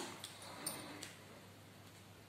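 Faint handling of two 18650 lithium-ion cells and a sheet being wrapped around them, with a few light clicks.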